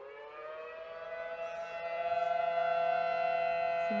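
Outdoor tornado warning siren sounding its monthly test: one held tone that rises slightly in pitch and grows louder over the first couple of seconds, then stays steady.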